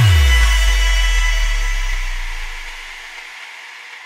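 The end of a Vietnamese pop dance remix: the beat cuts out and a deep synth bass note drops in pitch, then rings on and fades away over about three seconds, with the last high synth tones dying out behind it.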